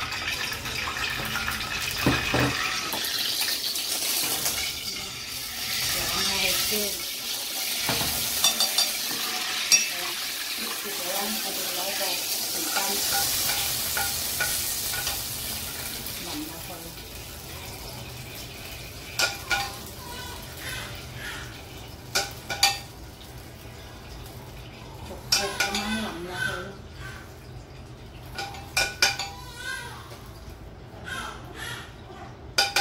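Soy sauce sizzling as it is poured into hot oil in a pan, a loud hiss that gradually dies away over about the first half. After that a metal spoon clinks a number of times against the pan and a plate as the sauce is stirred and spooned out.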